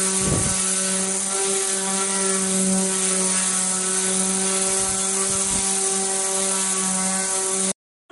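Electric orbital sander with 80-grit paper running steadily against a hardened floor-leveling cement skim coat: a constant motor hum under a high hiss of the pad on the surface. It cuts off suddenly near the end.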